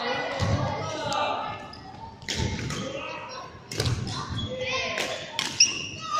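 Badminton rally on a wooden court floor: sharp cracks of rackets striking a shuttlecock, the loudest near the end, with thudding footfalls of players lunging on the boards.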